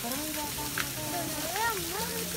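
Steady hiss of trickling water from a garden pond or stream, with people's voices talking over it.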